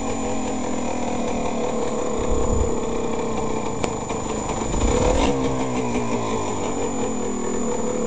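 Yamaha DT200R's two-stroke single-cylinder engine running at steady low revs, with a short rise in revs about five seconds in. A single sharp tick is heard shortly before.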